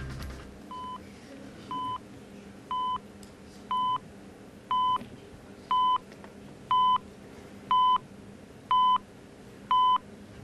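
Quiz-show countdown timer beeping ten times, once a second. Each beep is a short, steady mid-pitched tone, louder than the one before, counting off the seconds left to answer until time runs out.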